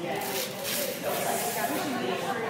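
Indistinct voices talking, with two short bursts of high, hiss-like noise, the longer one lasting most of a second.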